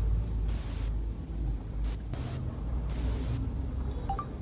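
Steady low vehicle rumble heard from inside a car, with four short bursts of hiss.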